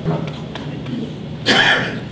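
A man clears his throat once into a lectern microphone, a short loud rasp about a second and a half in.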